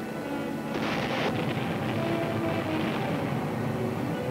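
An explosion in the sea: a sudden noisy blast about a second in that dies away over about two seconds, over orchestral background music.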